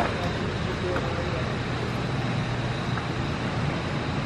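Faint, indistinct voices under a steady background noise.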